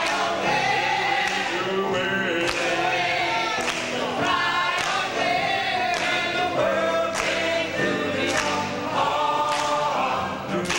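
Mixed gospel choir of men and women singing together in harmony.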